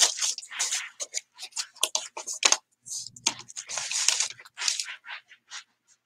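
Clear plastic wrapping crinkling and tearing in quick, irregular crackles as it is pulled open by hand.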